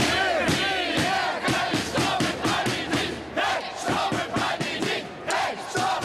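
A crowd of many voices chanting and shouting together in a loud, rhythmic cheer.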